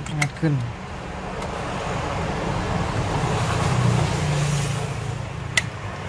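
A passing motor vehicle, its engine and road noise rising to a peak about four seconds in and then fading, with one sharp plastic click near the end as the keyboard is pried up.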